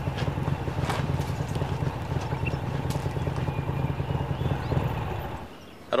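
Harley-Davidson motorcycle's V-twin engine idling with a low, pulsing beat, which cuts off about five seconds in.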